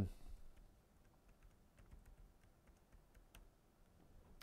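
Faint typing on a computer keyboard: an irregular run of light key clicks.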